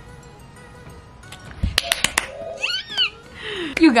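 A few sharp clicks, then a woman's short, high squeal of delight that glides up and down, followed by a breathy exhale just before she starts to speak.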